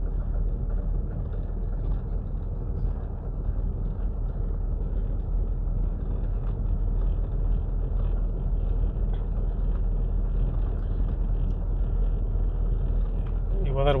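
Car driving slowly, heard from inside the cabin: a steady low engine and road rumble.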